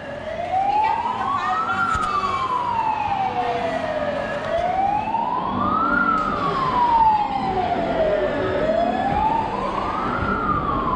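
Electronic wail siren of a small play fire engine, its pitch rising and falling slowly in a repeating cycle of about four seconds, two and a half cycles in all.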